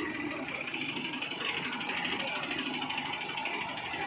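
Tractor diesel engine running steadily with a fast, even pulse.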